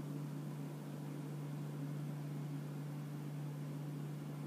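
Steady low hum with faint even hiss: background room tone with no distinct events.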